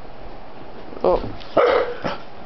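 A large dog barks once, loudly, as it lunges forward, just after a person's short 'oh'.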